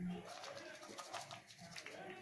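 Faint bird cooing: one short low coo right at the start, then soft, scattered clicks.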